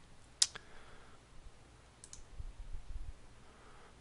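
Computer mouse button clicked once sharply about half a second in, then a fainter double click about two seconds in.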